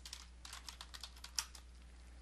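Typing on a computer keyboard: a quick run of about eight key clicks over the first second and a half, the last the loudest.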